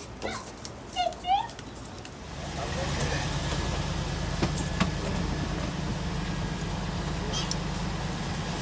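A couple of short high-pitched voice calls about a second in, then from about two seconds a steady low engine hum heard inside a car's cabin, with a few faint clicks.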